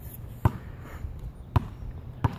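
Basketball bouncing on asphalt as it is dribbled on the run: two bounces about a second apart.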